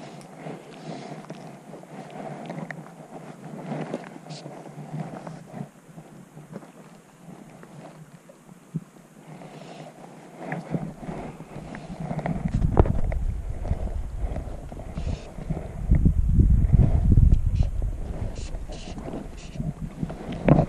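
Wind buffeting the microphone in low rumbling gusts, starting about twelve seconds in and loudest near the end, over the steady rush of a shallow river.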